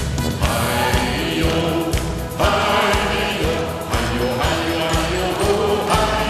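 Live band music with a steady beat, an instrumental passage between sung verses, with the audience clapping along.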